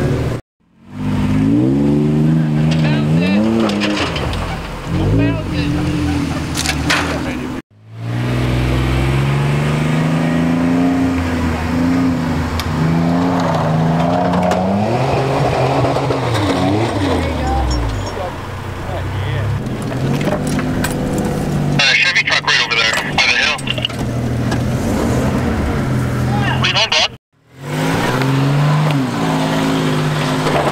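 Off-road 4x4 truck engines revving as they climb a steep dirt hill, the pitch rising and falling with the throttle, in several clips joined by abrupt cuts. A spell of crackling noise near the end, typical of tyres spinning and throwing dirt.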